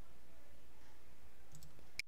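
Steady low hum of room tone, then two quick faint clicks near the end, followed by a sharper click as the sound cuts off abruptly.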